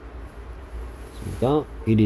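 A low steady hum with faint hiss underneath, then a man's voice comes in about a second and a half in.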